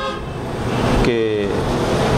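Road traffic noise, a steady rushing haze that grows louder about halfway through.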